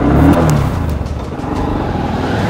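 Small single-cylinder Honda commuter motorcycle engine revving as the bike pulls away, loudest in the first second.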